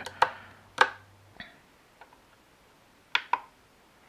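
Short sharp clicks from fingertip taps on the touchscreen of a Flysky FS-ST16 radio transmitter: two single taps in the first second, a fainter one, then a quick double tap about three seconds in.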